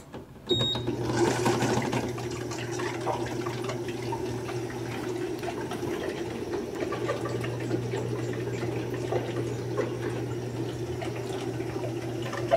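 Electrolux Essential Care top-load washing machine starting its cycle: a short beep about half a second in, then water pouring into the drum to fill it, with a steady low hum underneath.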